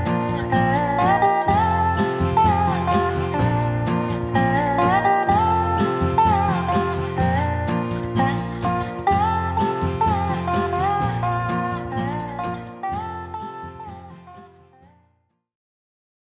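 Rogue Classic Spider resonator guitar played lap-style with a slide: gliding, sliding melody notes over a steady repeated bass. The playing fades out over the last few seconds to silence.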